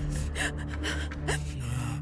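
A woman crying, with sharp gasping sobs, over a soft music score of held low notes.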